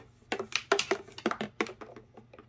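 Plastic RC fuel tank and its fuel line being handled and tilted: a string of light, irregular clicks and taps.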